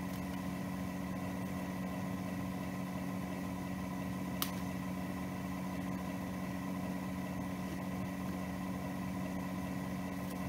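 A steady mechanical hum at an even level, with a single short scissors snip about four and a half seconds in.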